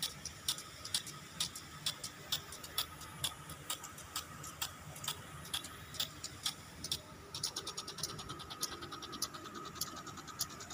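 Impact lawn sprinklers watering a grass pitch, their arms ticking about twice a second. About seven seconds in, a quicker run of ticks starts, with a faint steady tone under the clicking throughout.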